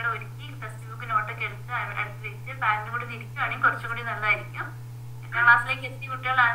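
A woman speaking over a video-call connection, in several phrases with a short pause near the end, over a steady low hum.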